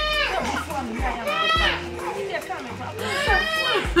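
A woman's voice crying out in long wails that rise and fall in pitch, three times, over background music with a low repeating bass.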